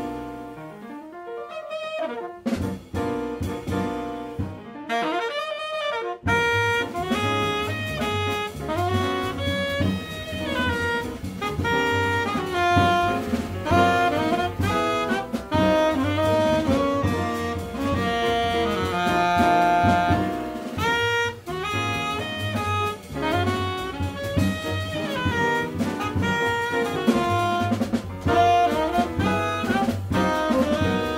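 A live jazz quartet: a tenor saxophone plays the melody with piano, double bass and drums. The opening is sparse, and the full band comes in about six seconds in, swinging from then on.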